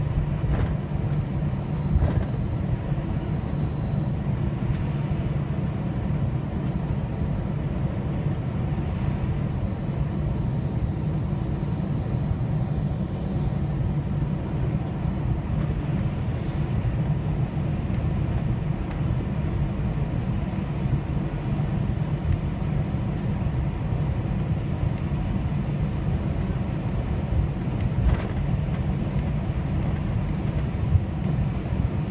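Steady low rumble inside the cabin of an Airbus A321-200 taxiing: the jet engines at idle and the rolling aircraft heard through the fuselage.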